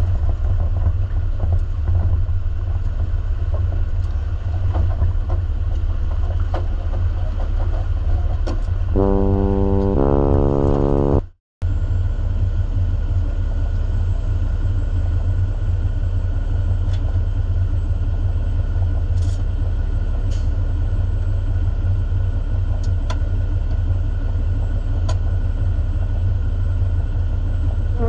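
Heavy diesel truck engine running with a steady low rumble. About nine seconds in, a short two-note tone falls in pitch, and the sound cuts out for a moment before the rumble resumes.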